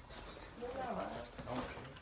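A short whimpering vocal sound that rises and falls in pitch, with muffled voices around it.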